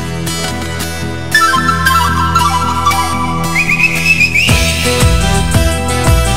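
Andean instrumental music: a whistle-like pan flute melody over a sustained backing, with a drum beat coming in about halfway through.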